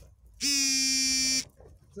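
A single loud, steady buzzing tone, held at one pitch for about a second before cutting off.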